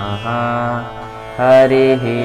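Sanskrit mantra chanting: a voice holding long melodic syllables over a steady drone. The loudest held note comes about a second and a half in.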